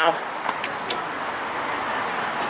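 Steady road traffic noise from a busy road close by, with two short clicks a little after halfway.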